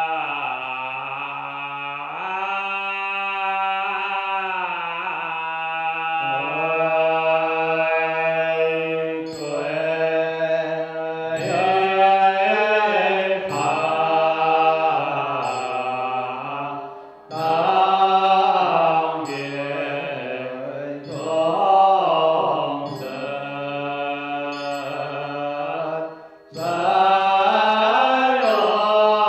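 Buddhist liturgical chanting in long, slowly gliding held notes, broken briefly for breath about two-thirds of the way through and again near the end. From about nine seconds in, a light knock about once a second keeps time.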